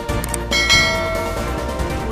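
A notification-bell chime sound effect rings out about half a second in, a bright ding that fades over about a second, preceded by two short clicks. Background music plays throughout.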